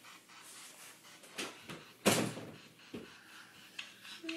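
A door being shut: one thump about two seconds in, with a few lighter knocks around it.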